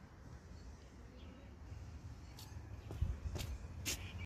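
Faint low rumble with a few light clicks and knocks in the last two seconds.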